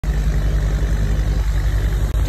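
A steady, loud, low engine rumble with an even rapid pulse, like a motor idling.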